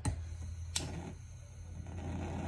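Propane hand torch on a small cylinder being handled just after lighting: a sharp click about three-quarters of a second in, over a steady low hum.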